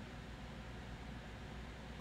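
Faint steady background hiss with a low hum underneath: room tone, with no distinct event.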